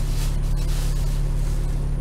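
Bus engine running with a steady low hum, heard from inside the bus cabin over an even noise of road and air.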